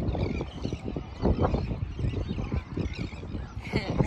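Wind buffeting the microphone as a low, uneven rumble, with a few short animal calls in the background about a second in.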